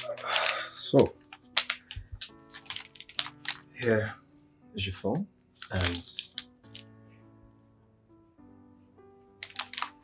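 Soft background music of held chords, with brief snatches of voice and small clicks over it.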